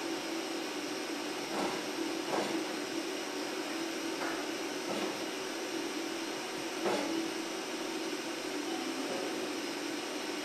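A steady machinery hum fills the space, with about five light knocks spread through it as a long aluminium extrusion beam is shifted against the metal frame.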